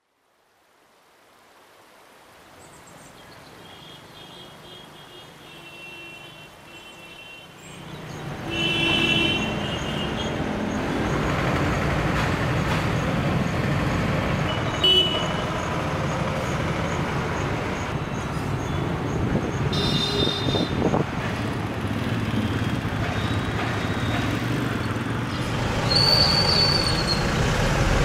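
Town street traffic fading in from silence and growing louder about eight seconds in: motor scooters and motorbikes passing, with short horn toots now and then.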